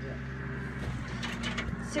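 John Deere 4440 tractor's six-cylinder diesel engine idling, a steady low hum, with a few faint clicks around the middle.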